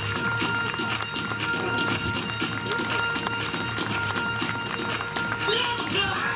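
Audience applauding: a dense, continuous patter of hand claps, over a few faint steady tones.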